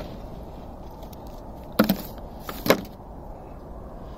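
Two sharp knocks about a second apart on the steel roof of a narrowboat as a frozen rope is handled, over a steady low rumble.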